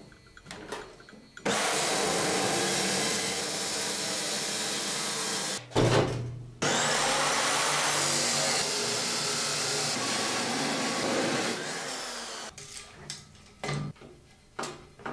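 Abrasive chop saw with a cut-off wheel cutting through square steel tubing: a loud, steady grinding run that starts suddenly about a second and a half in, breaks off briefly midway, and runs again until near the end. A few light knocks follow.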